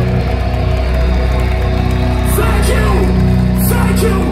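Metalcore band playing live through a festival PA, with distorted guitars holding steady low chords. A voice comes in over the music about two seconds in.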